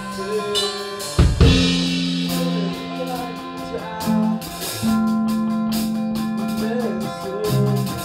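Indie rock band playing an instrumental passage in rehearsal, recorded in the room on a mobile phone: drum kit with regular cymbal strokes, guitar lines and long held low notes, with a loud drum hit just over a second in.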